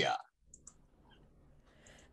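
A spoken word ends at the very start. Then there is near silence with two faint, short clicks about half a second in, and a few fainter ticks after them.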